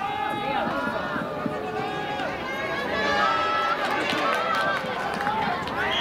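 Many voices shouting and cheering at once, with long overlapping calls held over each other, as a running play unfolds in an American football game.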